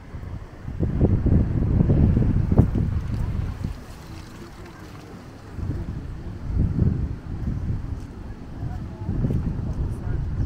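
Wind buffeting the microphone in gusts: a low rumble that swells about a second in, eases off around four seconds, and comes back twice in the second half.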